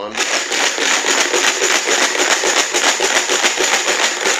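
Numbered raffle pieces rattling inside a green plastic box as it is shaken hard to mix them for the draw: a dense, continuous clatter of many small clicks.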